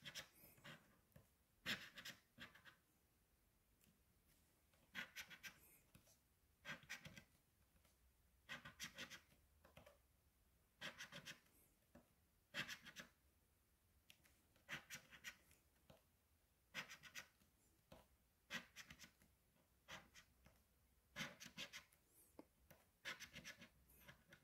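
A coin scratching the coating off a lottery scratch-off ticket: short, faint scraping strokes in small clusters, every second or two.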